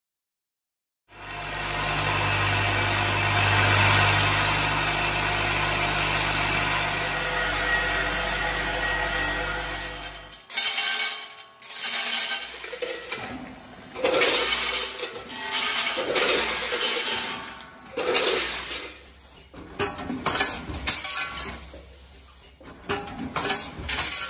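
Premade pouch bagging and filling machine running: a steady mechanical noise with a low hum for about ten seconds, then an irregular series of short hisses and clanks as it cycles.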